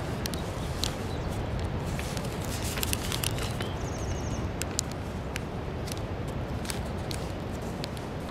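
Origami paper crackling and creasing under the fingers as flaps are folded down, in many short sharp clicks, over a steady low rumble.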